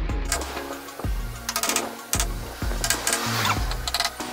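Background music with a bass line, and under it a few irregular sharp taps of a hammer striking a wood chisel as the recess for a deadbolt's faceplate is cut into a wooden door edge.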